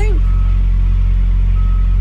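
Steady, loud low drone of an idling diesel truck engine, unchanging throughout, with a faint high whine above it.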